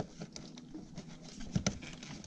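Light tapping and scuffing of hands handling plastic engine-bay parts and wiring as a small module is set back in place, with a couple of sharper clicks just past the middle.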